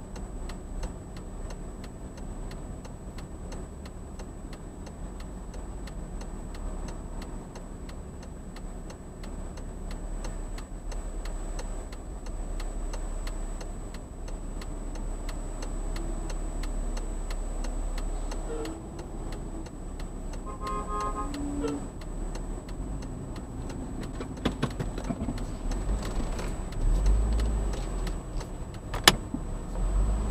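Low rumble of traffic and an idling car, heard from inside the car's cabin, with a steady, regular ticking throughout. A short pitched tone sounds about 21 seconds in, and a single sharp click comes near the end.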